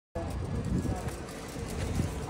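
Low, steady rumble of road traffic in the background.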